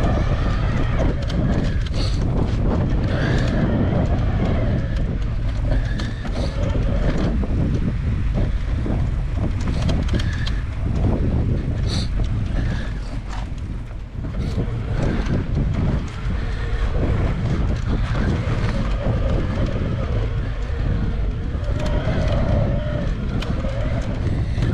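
Mountain bike riding over a rough dirt trail, heard through a handlebar-mounted camera: a steady low rumble of tyres and frame, broken by frequent rattles and knocks over bumps.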